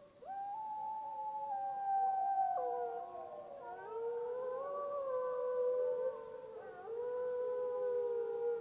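A chorus of howls: several long, wavering tones overlapping and gliding up and down in pitch, starting suddenly just after the start.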